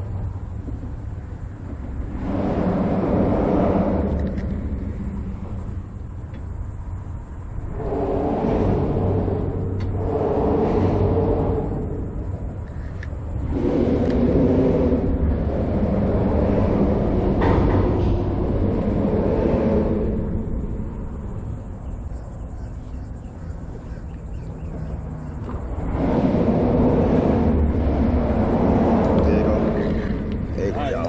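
Traffic crossing the bridge overhead: a loud rumble that swells and fades in waves every few seconds as vehicles pass, each pass carrying a low hum.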